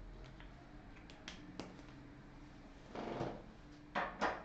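Quiet room with a few faint clicks and handling noises, a brief soft rustle about three seconds in, then a sharper click near the end as a whiteboard marker is picked up from the board's tray.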